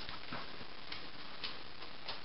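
A small dog's claws clicking faintly on a tile floor, three light clicks about half a second apart, over a steady background hiss.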